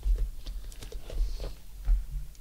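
A quick, irregular run of light clicks and taps with low thumps, close to the microphone: hands handling things on a tabletop.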